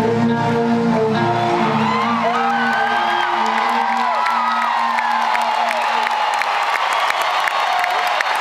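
A live rock band's final chord ringing out through the arena PA and fading away over the first few seconds. An arena crowd cheers over it and carries on afterwards, with high shouts that slide up and down in pitch and scattered clapping.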